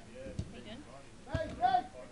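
Short shouts from footballers on the pitch, a couple of calls about a second and a half in. A dull thud comes about half a second in.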